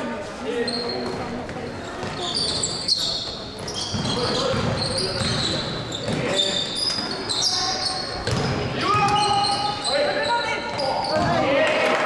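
Live basketball play in an echoing sports hall: a ball bouncing on the court, many short, high-pitched sneaker squeaks, and players and spectators calling out.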